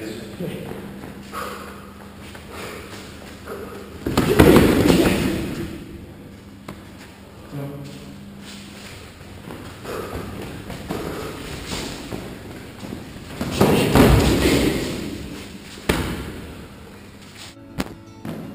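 Karate point-fight sparring in boxing gloves: glove strikes, thuds and scuffling of the fighters close in, loudest in two bursts about four seconds in and again about fourteen seconds in, with lighter knocks and footfalls on the mats between.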